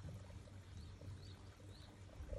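Quiet outdoor ambience: a low rumble of wind on the microphone with a few faint, high chirps.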